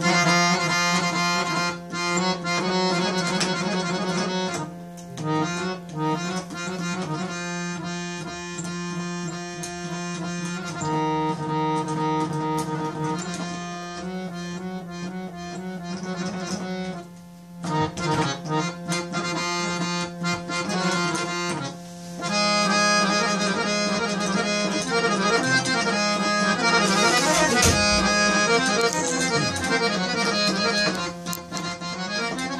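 Harmonium playing a melody over a steady held drone note, with brief breaks about 5, 17 and 22 seconds in.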